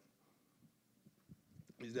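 Near silence: room tone with a few faint low thumps, then a man's voice begins a short question near the end.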